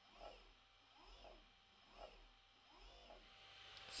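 Faint whine of an AC servo motor rising and falling in pitch about once a second as it repeatedly speeds up and slows down, a sign that the motor is responding to the controller's step and direction signals.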